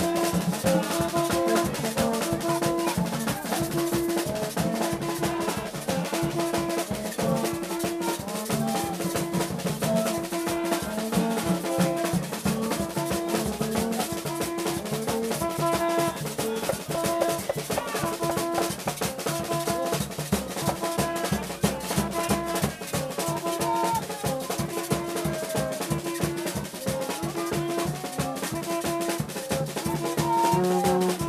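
Gagá band playing: single-note blown tubes (vaksen) trade two low tones back and forth in a steady repeating hocket, over a trumpet line and a driving snare drum and metal percussion rhythm.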